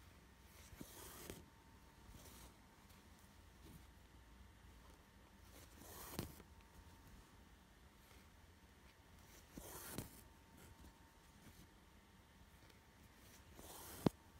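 Faint swishes of embroidery thread being drawn through Aida cross-stitch cloth, four of them, each under a second, as cross stitches are worked, with a sharp tick at the very end.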